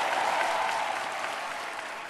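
Audience applause, fading steadily away.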